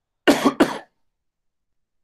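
A man coughs twice in quick succession into his fist, two short, loud coughs under a second in all.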